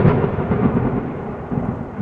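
A transition sound effect: a sudden loud low rumble that hits at the start and slowly dies away.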